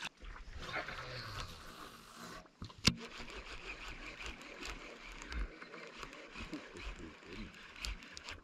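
Faint splashing and churning of a topwater musky lure reeled across the water, with the baitcasting reel being cranked. A single sharp knock comes about three seconds in.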